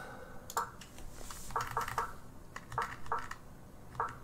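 Light, irregular clicking at a computer, about seven or eight soft clicks over a few seconds, as the moves of an online chess game are stepped back through.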